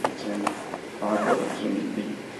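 A man's voice through a handheld microphone and PA in a classroom, speaking in short phrases, with two sharp pops, one at the start and one about half a second in.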